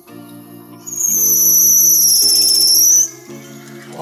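Film background score of sustained low chords that change about once a second. From about one to three seconds a loud, high-pitched trilling whistle tone rides over it and cuts off suddenly.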